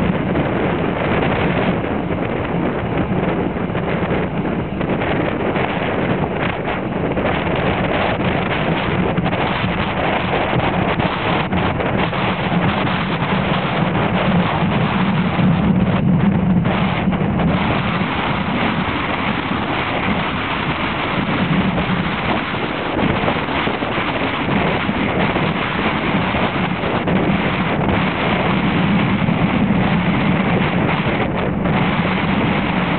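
Strong wind buffeting the microphone: a loud, steady rushing rumble that swells and eases with the gusts.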